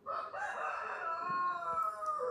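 A rooster crowing: one long call that drops in pitch at the end.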